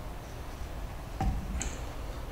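Steady low room noise with a soft thump a little over a second in and a short, sharp click just after.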